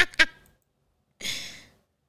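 A woman's laugh ending with its last quick 'ha's, then, about a second later, a short breathy sigh.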